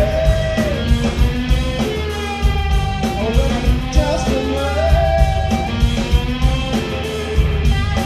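Live rock band playing loudly: distorted electric guitar, electric bass and a drum kit, with a wavering lead line over a steady beat.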